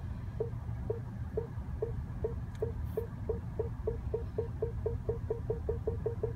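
BMW 740i's Park Distance Control warning beeping: short mid-pitched beeps that speed up from about two a second to about five a second as the self-parking car closes in on an obstacle. A steady low rumble from the car runs underneath.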